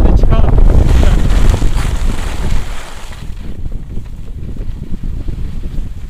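Wind buffeting the microphone of a pole-mounted camera, with a snowboard sliding and scraping over packed snow. It is loud for the first half, then drops clearly in level about three seconds in.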